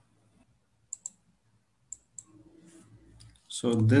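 Computer mouse clicks: a quick pair of sharp clicks about a second in and another pair around two seconds in.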